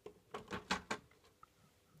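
A quick run of about five light clicks and knocks in the first second as plastic model locomotives are handled.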